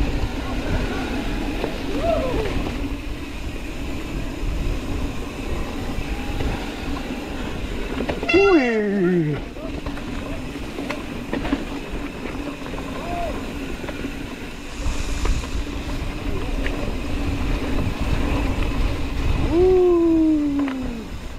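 Mountain bike rolling over leaf-covered dirt singletrack: steady tyre and trail rumble with a constant hum. About eight seconds in, a short, loud, falling vocal cry rises above it.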